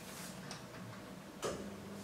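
Quiet room tone with a steady low hum, broken by a few light clicks and one louder knock about one and a half seconds in.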